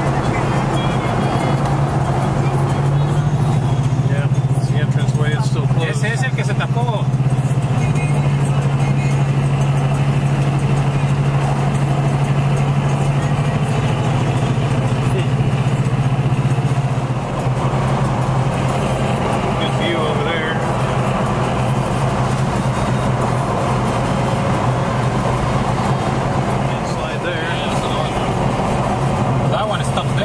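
Steady low drone of road and engine noise heard from inside a car driving along a highway. It is stronger at first and eases a little about halfway through.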